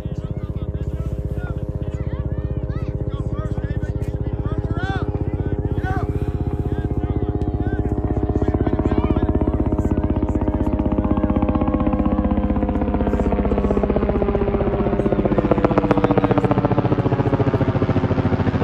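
A loud engine drone with a fast, even throb, growing louder and sliding in pitch over the last few seconds.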